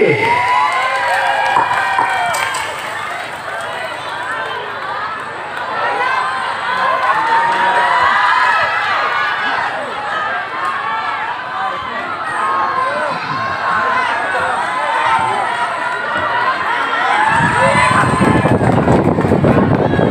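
A large crowd, mostly women, cheering and shouting with many overlapping high voices. Near the end a rough, rushing noise comes in underneath.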